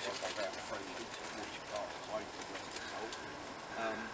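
Quiet outdoor camp ambience: faint, distant voices with soft bird calls in the background.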